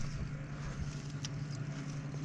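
Steady low hum of a boat's motor, with a few faint ticks over it.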